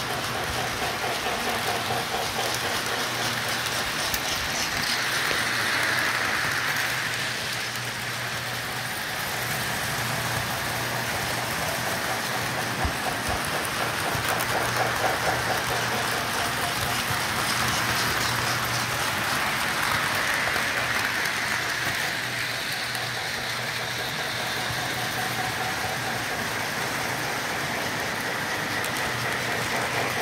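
Model electric trains running on the layout's track: a continuous rolling clatter of wheels and motors that swells twice as trains pass close by, over a steady low hum.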